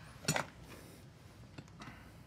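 Shoe pullers levering a steel horseshoe off a horse's hoof, with faint metal clicks and creaks as the nails work loose.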